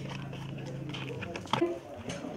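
Faint crackling of large wrapping leaves being handled, over a steady low hum that stops about a second in; a short burst of voice follows soon after.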